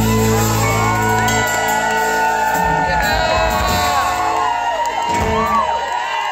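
A live band holding out a final chord with heavy bass that drops away within the first few seconds, under a crowd shouting and whooping.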